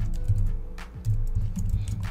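Computer keyboard being typed on: a quick run of key clicks, over background music with a low steady bass and faint held notes.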